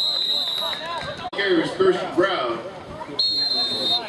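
Referee's whistle giving two steady, high-pitched blasts, the first ending under a second in and the second starting near the end, blowing the play dead after a tackle. Players' and spectators' voices are heard between the blasts.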